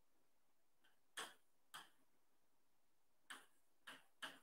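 Chalk on a blackboard as numbers are written: a handful of short, sharp tapping strokes, spaced unevenly, one of them faint.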